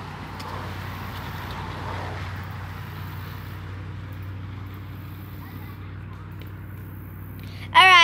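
Longboard wheels rolling over rough concrete: a steady grinding rumble with a low hum in it. It stops right at the end.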